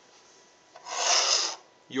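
A single brief rasping rub, under a second long, about a second in: a hand sliding a business card in a black binder clip off the desktop.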